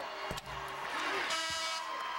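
Music plays in the basketball arena over crowd noise, with a pitched tone full of overtones about halfway through. Two short knocks come about a second apart, the ball bouncing on the court after the made free throw.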